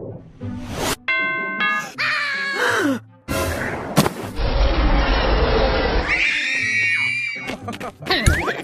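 A string of cartoon sound effects over background music: a bell-like ding about a second in, a sliding fall in pitch, a sharp hit about four seconds in, then a long low rumble lasting over a second.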